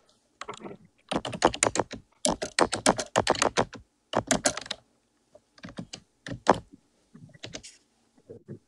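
Typing on a computer keyboard: fast runs of sharp key clicks for about four seconds, then a few scattered keystrokes.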